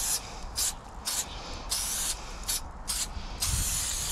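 Aerosol spray paint can spraying in short, separate bursts of hiss, about seven of them, the last one longer, as lines are painted onto a cinder-block wall.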